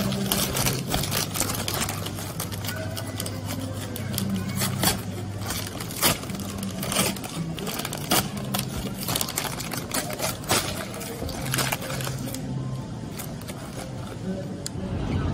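Burger King paper bag and wrapper crinkling and rustling as they are opened and folded back on a plastic tray, a run of sharp paper crackles, with music underneath.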